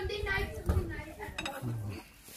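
A metal fork clinking and scraping on a plate during a meal, with voices talking in the background.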